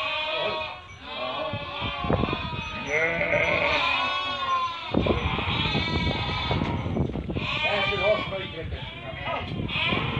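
A flock of sheep bleating, with many calls overlapping throughout and a short lull about a second in.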